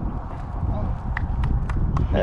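Low rumble of wind buffeting the microphone, with a few light clicks in the second half from fishing tackle being handled close by.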